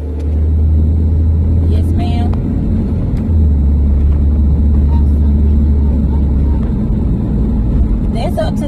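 A car driving, heard from inside the cabin: a loud, steady low rumble of engine and road noise that shifts slightly about three seconds in.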